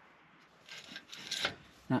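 A short, soft rasping rub lasting about a second, starting about half a second in.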